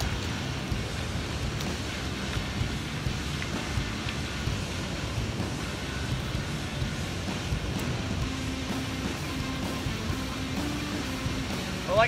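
Steady wash of river water and wind noise on the microphone, with faint music underneath and a sustained low tone in the second half.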